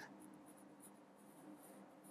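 Faint scratching of a Sharpie marker's felt tip drawing lines on paper, in a few short strokes, over a faint low room hum.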